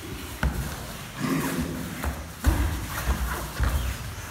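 Two people grappling on foam floor mats: grunts and heavy breathing of effort, with dull thuds of bodies and limbs against the mats, the heaviest about two and a half seconds in.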